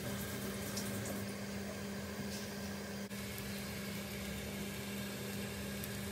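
Eggs and cheese sizzling softly in the oiled wells of a cast-iron paniyaram pan, over a constant low hum.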